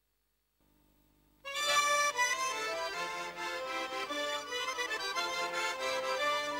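Abkhaz folk dance music led by an accordion starts abruptly about a second and a half in, a busy, quick-moving melody after near silence.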